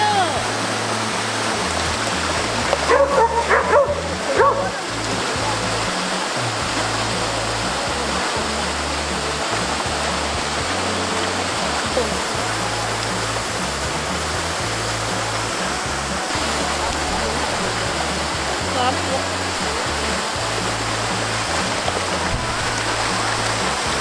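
Shallow mountain stream running steadily over stones, with a border collie giving several short calls about three to four and a half seconds in. Background music with a steady bass runs underneath.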